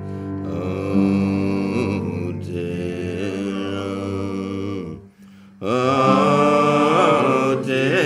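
Several voices singing long held notes in a chant-like folk chorus over a steady low drone. The sound breaks off briefly about five seconds in, then the voices come back in.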